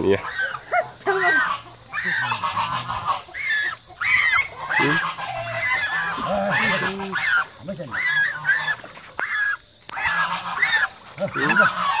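African goose honking over and over, many short calls in a row, as it is held by hand after being caught: distress calls that sound sad.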